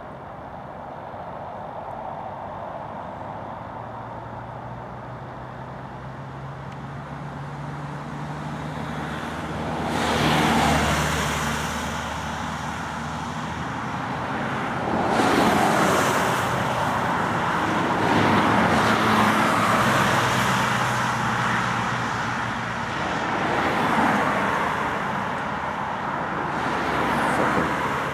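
Main-road traffic passing close by: a low engine hum builds over the first ten seconds, then cars go past one after another in loud swells, about ten seconds in, again from about fifteen to twenty-one seconds, and near the end.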